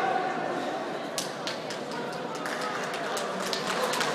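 Indistinct voices and chatter in a large, echoing sports hall, with scattered light knocks and clicks.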